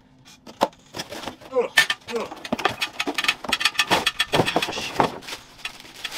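Unboxing noise: scissors snipping packing tape and a cardboard box being pulled open, then a plastic-bagged electronic drum pad crinkling and rustling as it is lifted out, a dense run of small clicks and crackles.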